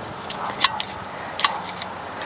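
Light clicks of fishing lures being picked through in a small metal tin, with two sharper clicks under a second apart over a faint background hiss.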